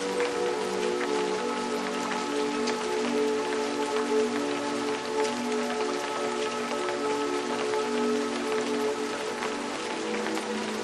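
Steady rain with many small drop hits, layered with slow music of held notes that shift now and then.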